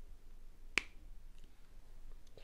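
A single sharp plastic click about three-quarters of a second in, a highlighter cap being snapped shut.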